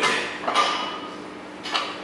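Metal clinks from a loaded barbell as it is gripped and set: a sharp knock at the start and another about half a second in, each followed by a faint ringing that fades.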